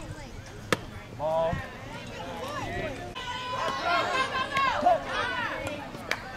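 A single sharp crack of the pitched softball about a second in, followed by high-pitched girls' voices calling and cheering from the players, busiest in the second half.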